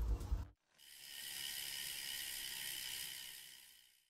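Background music cutting off about half a second in, then a soft airy hiss with faint steady high tones that swells up and fades away: an outro logo sound effect.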